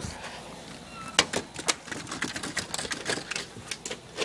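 Wheaten terrier pawing at a door to open it: a run of irregular sharp clicks and taps from claws and the door's latch, starting about a second in.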